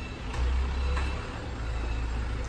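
Wind buffeting the phone's microphone: a deep, uneven rumble that swells for about a second near the start, over faint outdoor hiss.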